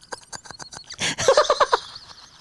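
Two men laughing hard: a run of short wheezing, breathy gasps, then about a second in a quick burst of pitched "ha-ha-ha" pulses that tails off.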